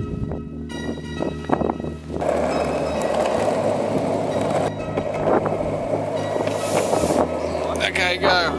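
A penny board's plastic wheels rolling on asphalt: a steady, rough rumble that sets in about two seconds in, after a few sharp knocks. Background music plays throughout.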